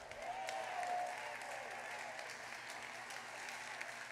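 Congregation applauding, a steady crackling clapping that carries through, with a brief held note near the start.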